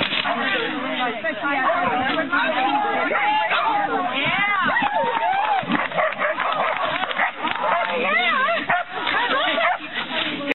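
Dogs barking over loud, continuous crowd chatter and calls, with the sharpest barking about four to five seconds in and again near eight seconds.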